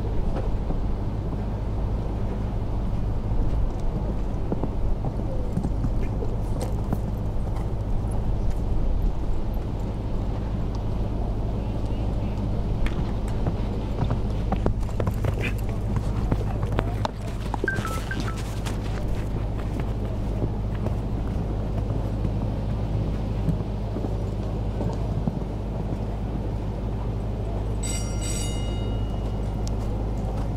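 A show-jumping horse cantering on a sand arena, its hoofbeats faint under a steady low rumble. A short pitched tone with overtones sounds near the end.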